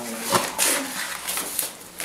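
Handling noise from a ring binder and its papers being moved: a short click, then a brief papery rustle and faint shuffling.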